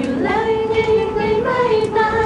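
Voices singing long held notes with little or no accompaniment, the line gliding up near the start, holding steady, then stepping slightly higher about one and a half seconds in.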